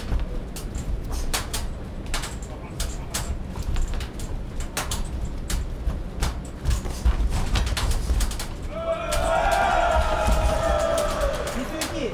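Boxing match sounds over a low arena rumble: sharp knocks and slaps of gloved punches and footwork on the ring canvas come every second or so. About nine seconds in, raised voices shout for about three seconds.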